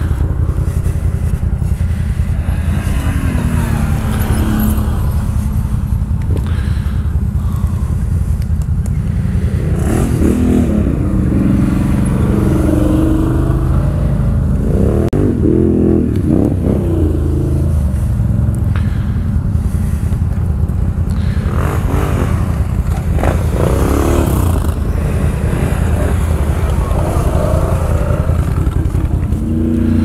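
ATV engines: one runs steadily close by throughout, while other quads rev up and down as they climb a slope. The revving comes from about ten seconds in and again a little after twenty seconds.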